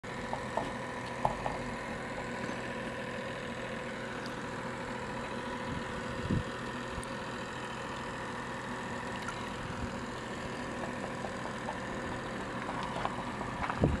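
Steady machine hum holding several constant tones, with a few faint clicks early on and a soft low thump about six seconds in.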